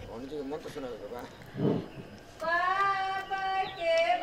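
A few spoken words, then from about halfway a high voice singing long held, slowly gliding notes, in the style of a wedding song or chant.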